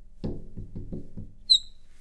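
Marker pen writing on a glass lightboard: a quick run of short scratchy strokes as the letters go down, then one brief high squeak of the felt tip on the glass about a second and a half in.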